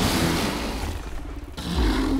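Cinematic trailer sound effects: a loud hit that dies away in a noisy rumble, then a deep low boom swelling near the end.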